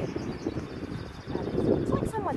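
Wind buffeting the microphone, with plastic rubbish bag rustling and handling noise as the bag is pushed into a street bin. It gets louder in the second half.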